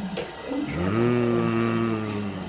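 A person's voice holding one long, low note, like a drawn-out hum or "ooh". It slides up in pitch as it starts, just under a second in, then stays level.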